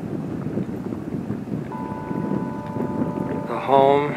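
Wind rumbling on the microphone, steady throughout. A faint steady high tone joins a little before halfway, and a short pitched call sounds just before the end.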